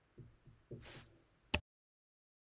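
Hands handling a paint marker on a craft desk: a few soft low knocks and a brief rustle, then one sharp click. After the click the sound cuts off completely.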